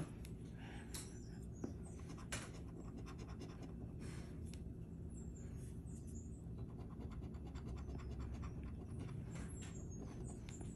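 A coin scratching the coating off a scratch-off lottery ticket in quick, repeated strokes. The coating is hard to scratch and takes a lot of effort.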